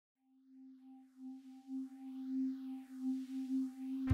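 A single held musical tone swelling slowly in loudness with a gentle pulsing, under a faint rising and falling whoosh: the opening swell of an intro jingle.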